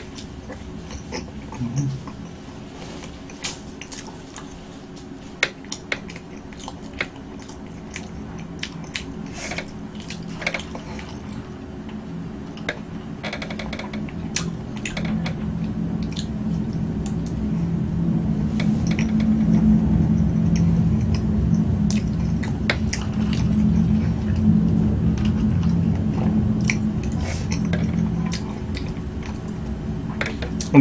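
Close-miked chewing of soft chocolate cake, with many short wet mouth clicks and smacks. In the second half a low steady hum grows louder and stays loud until near the end.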